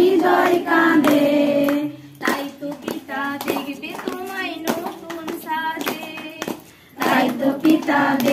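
Voices singing a Bengali devotional song to Jesus, with hands clapping in time. The singing drops much quieter about two seconds in and comes back loud near the end.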